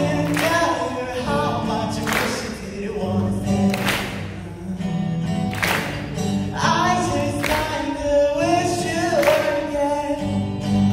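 A solo singer accompanying himself on a strummed acoustic guitar, amplified through a hall PA: a sung melody over chord strokes that come every second or so.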